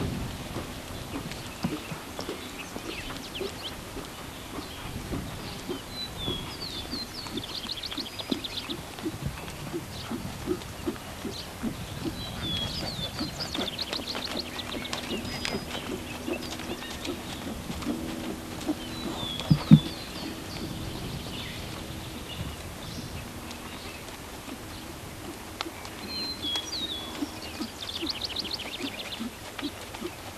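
A horse's hooves thud on the sand arena as it walks, with a bird singing short trilled phrases every few seconds. A low steady hum runs through the middle stretch, and one sharp knock stands out about two-thirds of the way in.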